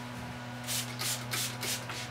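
Hand-held trigger spray bottle misting the canvas of an acrylic painting: five quick, short hissing sprays in just over a second, starting past the middle.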